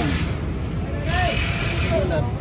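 Outdoor street-market background: a steady low rumble with faint voices, and a hiss over the second half.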